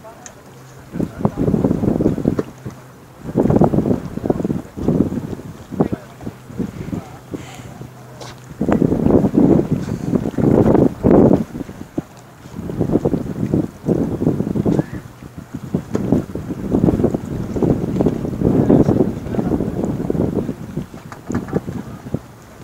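Wind gusting and buffeting a phone microphone in irregular loud blasts, with a faint steady low hum for roughly the first eight seconds.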